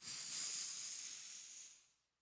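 A man's long hissing "shhh" blown through the mouth into a handheld microphone, a vocal imitation of a rushing wind. It starts suddenly and fades away over nearly two seconds.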